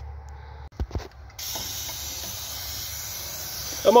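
Aerosol can of Fluid Film undercoating spraying in one steady hiss that starts suddenly a little over a second in, after a couple of brief knocks.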